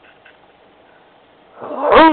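A loud, drawn-out cry near the end, rising briefly in pitch and then falling away, roar-like; before it only faint hiss.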